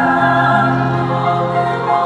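A choir singing sustained chords in several parts, with the harmony shifting just after the start and again near the end.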